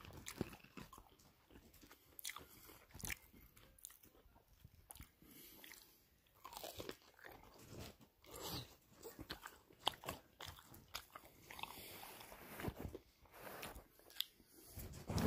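Someone biting and chewing crunchy food close to the microphone: irregular, soft crunches and mouth clicks.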